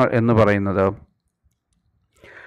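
A man speaking for about a second, then silence.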